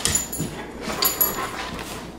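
A Bernese mountain dog moving about close by, with irregular short clicks and rustles.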